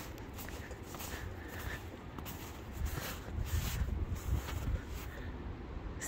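Outdoor ambience of wind rumbling on the microphone, with faint irregular footsteps in snow.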